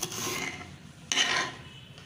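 A kitchen knife slicing through green bell pepper and scraping on a hard stone board, two rasping strokes about a second apart, the second one louder.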